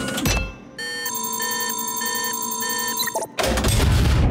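Cartoon machine sound effect: a short clunk as a glass dome lowers, then about two seconds of steady electronic tones with pulsing beeps while the copying machine scans, ending in a loud whooshing rush.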